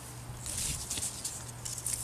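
Soft rustling and light scratching of leafy mandevilla stem cuttings being handled and picked up.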